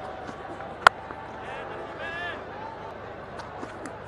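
Steady stadium crowd noise with one sharp crack a little under a second in: the impact of a cricket ball as the delivery reaches the batter's end. Faint shouts follow.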